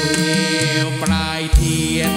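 Live traditional Thai music: a man chanting a song into a microphone over a sustained free-reed accompaniment, with a single low drum thump about one and a half seconds in.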